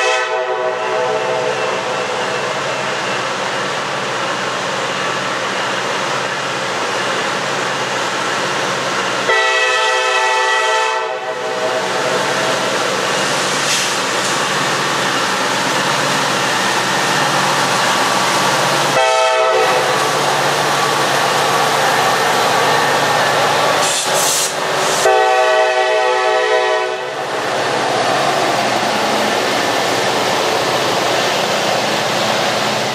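Diesel freight locomotive's air horn sounding the grade-crossing signal as the train approaches: the end of one blast, then a long, a short and a long blast, over the steady drone of the diesel engines. Near the end the empty coal hoppers roll past with wheel clatter on the rails.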